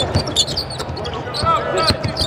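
A basketball being dribbled on a hardwood court, a few sharp bounces, with sneakers squeaking on the floor as players shift.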